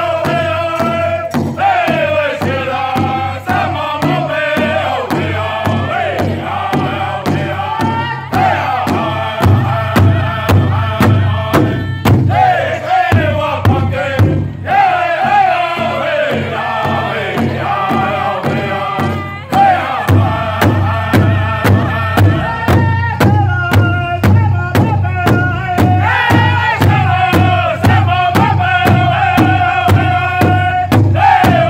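Powwow drum group singing a trot song: several men beating a large hide-covered powwow drum together with drumsticks in a fast, steady beat while singing in unison in high voices.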